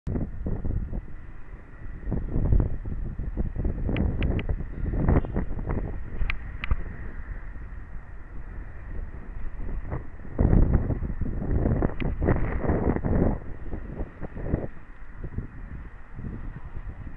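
Wind buffeting the microphone of a head-mounted camera, coming in uneven gusts of low rumble with several strong surges, and a few sharp little clicks in the first half.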